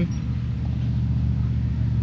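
A steady low mechanical hum, even and unchanging, made of several low tones.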